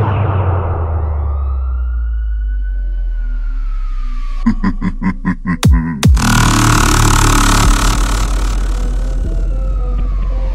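Heavy dubstep track: a held deep bass under a slow siren-like synth tone that rises and then falls. About halfway it breaks into a rapid stutter and a short gap, then comes back in fuller and denser.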